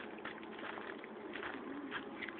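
A bird calling over a run of irregular short ticks and rustles.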